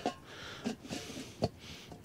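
Lid of a small portable kettle barbecue being settled on its bowl: mostly quiet, with a few faint clicks, the sharpest about one and a half seconds in.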